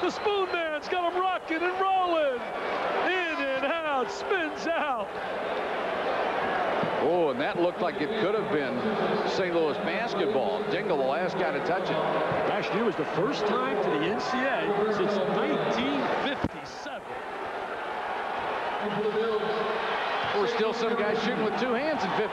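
Basketball arena sound on a worn VHS recording of a TV broadcast: crowd noise and voices, with the ball bouncing and sneakers squeaking on the hardwood court. The noise drops briefly about three-quarters of the way through.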